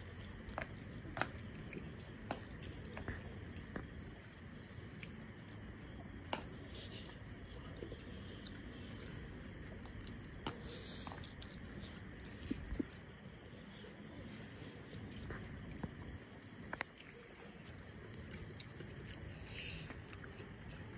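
People eating noodles by hand from steel plates, heard as faint chewing and slurping with scattered light clicks and taps.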